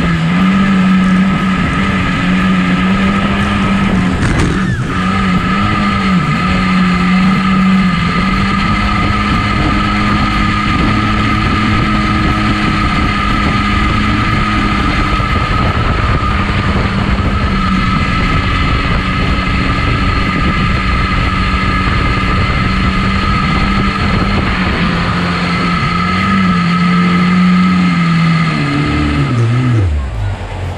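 A small jet boat's engine runs hard at a steady high pitch over the rush of water and spray. Near the end the throttle comes off and the engine note drops quickly.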